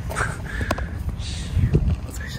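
A bird giving one drawn-out call, with a single sharp click partway through.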